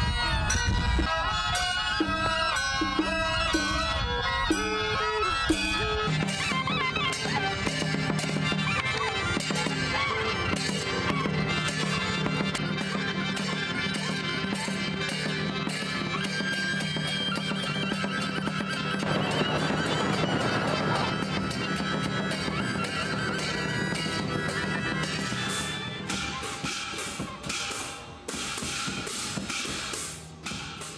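Chinese folk wind-band music: sheng mouth organs and a reed pipe playing a wavering melody. About six seconds in it changes to a shawm band, with a steady drone under dense, regular percussion strokes.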